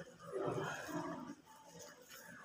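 An indistinct person's voice for about a second, with no clear words.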